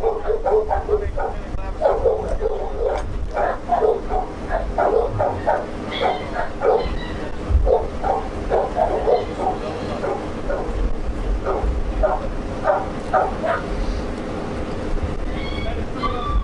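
A dog barking over and over, several short barks a second, falling off near the end.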